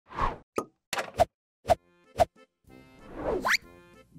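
Logo intro sound effects: a run of about six short pops, a few soft musical notes, then a rising whoosh that ends in a quick upward sweep about three and a half seconds in.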